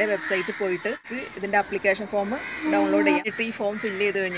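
A woman talking, her voice pausing briefly about a second in.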